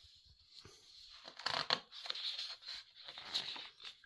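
Large paper pages of a hardback coffee-table book being handled and turned, a fold-out page among them, rustling and crinkling in uneven bursts, loudest about one and a half seconds in.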